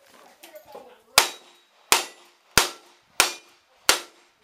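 Five revolver shots fired in a steady string, about two-thirds of a second apart, each a sharp crack with a short trailing echo.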